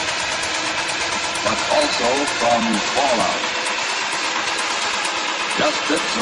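Dark minimal techno: a dense, rumbling noise texture under a steady ticking rhythm, with brief snatches of a sampled voice about a second and a half in and again near the end.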